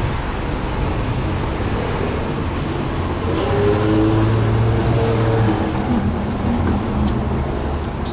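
Busy road traffic, a steady rumble of cars passing close by. One car's engine grows louder and passes about halfway through.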